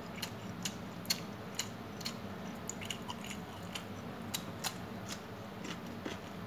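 Close-up eating sounds of a person chewing a mouthful of rice and chicken curry: wet mouth clicks and smacks, irregular, about two a second, the sharpest about a second in, over a steady low hum.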